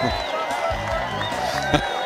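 Golf gallery cheering a bunker shot that has just run into the hole, with a man laughing at the start, over background music.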